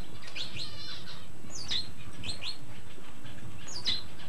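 Birds calling: short, sharp, high-pitched chirps about once a second, with a quick run of rapid chirps about half a second in and a downward-slurred call just before the end.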